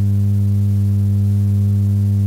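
Steady low electrical hum with a ladder of buzzing overtones from the microphone and sound system, loud in the pause between phrases.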